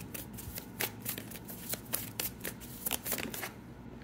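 A deck of tarot cards being shuffled by hand: quick, irregular flicks and slaps of card on card that stop about half a second before the end.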